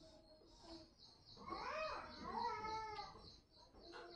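An animal's high, wavering call in the background, two arching calls back to back around the middle, over a faint high chirping that repeats about four times a second.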